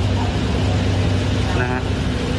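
A steady low mechanical hum, with a man's short spoken word near the end.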